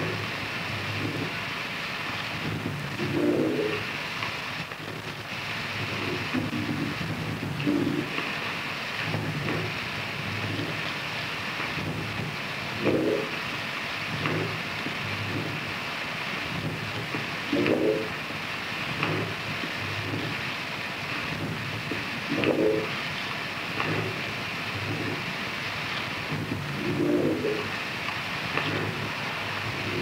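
Experimental harsh noise recording: a dense, continuous noisy texture with a low swell that recurs about every five seconds, like a loop.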